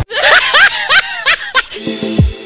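Laughter in about five quick, high-pitched, rising-and-falling bursts, a comic laugh sound effect. Electronic music comes back in near the end.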